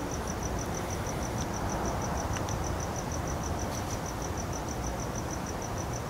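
A cricket chirping steadily in rapid, evenly spaced high-pitched pulses, about eight a second, over a steady low background noise.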